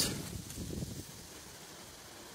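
Faint outdoor background: a low rumble, like light wind on the microphone, that dies down within the first second to a quiet steady hush.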